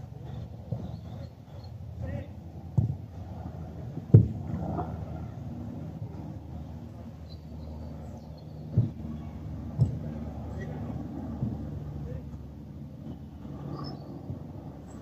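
Players' voices calling across a small-sided football pitch, with several sharp thuds of the ball being struck, the loudest about four seconds in.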